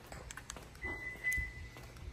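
Footsteps on the concrete floor of an underground parking garage, a few soft scuffs, with a faint steady high tone setting in about halfway through.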